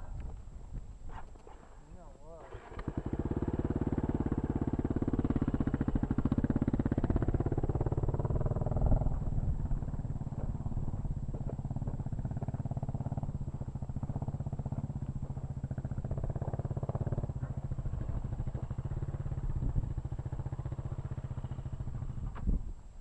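Dual-sport motorcycle engine from the rider's own bike, heard through a helmet camera: it picks up about three seconds in as the bike pulls away, rising in pitch as it accelerates, then runs more steadily at trail speed.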